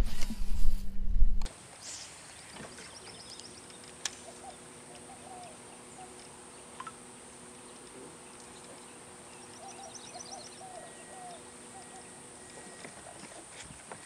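Quiet outdoor lake ambience: small birds chirping in short runs, twice, over a faint steady hum. It opens with about a second and a half of loud low rumble on the microphone before the sound drops away.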